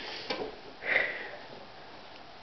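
A short sniff, about a second in, with a fainter brief sound just before it.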